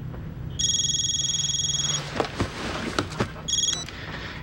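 A telephone ringing with a high electronic tone: one ring of about a second and a half, then a second ring cut short after a moment.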